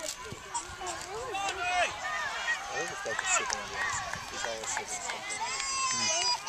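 Overlapping shouts and calls from spectators and players at a youth soccer game, many voices at once with no single voice standing out, and one longer drawn-out shout near the end.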